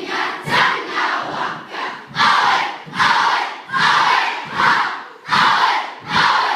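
A school kapa haka group of children performing a haka: many young voices shouting a rhythmic chant in unison, with a loud shouted phrase roughly once a second.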